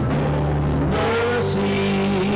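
Live worship band music: a saxophone plays long held notes over keyboard, with the notes changing about a second in.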